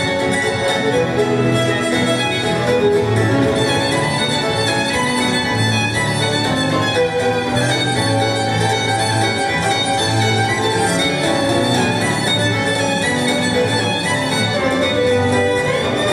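Fiddle playing a tune over a steady accompaniment of held low notes.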